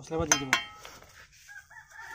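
A rooster crowing, with two sharp taps of a bricklayer's steel trowel on brick close together about a third and half a second in; a second, higher call starts near the end.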